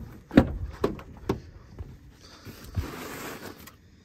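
Handling noise at a broken pop-up lawn sprinkler: a few sharp knocks, the first the loudest, then about a second and a half of rustling scrape as the sprinkler fitting is reached for in the dirt.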